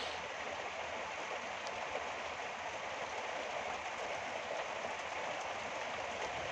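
A steady, even hiss of background noise with no speech, with a couple of very faint ticks.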